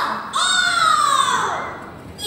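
A high-pitched voice giving one long cry that falls in pitch over more than a second and then fades.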